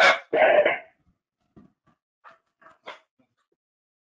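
A dog barking twice in quick succession, followed by a few faint ticks.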